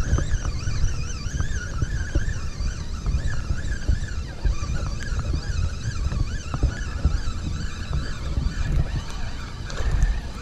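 Penn spinning reel being cranked steadily to bring in a hooked trout, its gears giving a whir that wavers in pitch with the turns of the handle. Wind rumbles on the microphone underneath.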